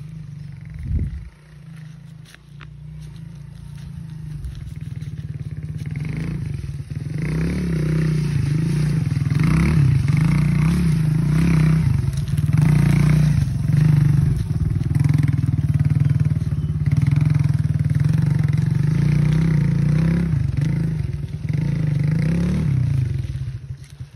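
Small motorcycle engine riding past close by over rough forest ground, its revs rising and falling with the throttle. It grows louder over the first several seconds and falls away near the end.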